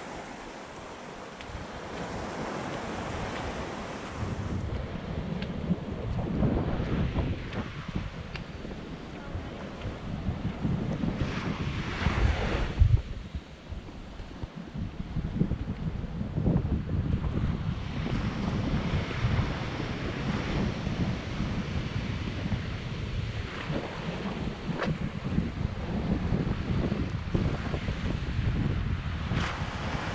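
Small surf breaking and washing up a sandy beach in rolling surges, with wind buffeting the microphone.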